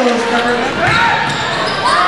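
A basketball bouncing on a hardwood gym floor as it is dribbled, with voices shouting over it.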